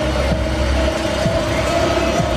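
Loud electronic dance music from a festival stage sound system: a held synth note rising slowly in pitch over a heavy bass drone, with a low downward-sweeping bass hit about once a second.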